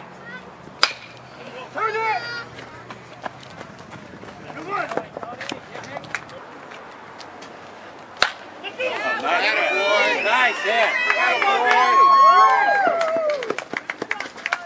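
A sharp knock about a second in. About eight seconds in, a metal baseball bat strikes the ball with a loud, sharp crack, followed by several voices shouting and cheering together for about four seconds.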